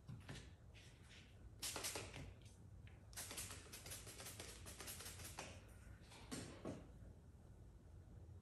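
Trigger spray bottle spritzing slip solution onto paint protection film and a car's mirror cap: a run of short, quick sprays, some in fast clusters, ending about seven seconds in.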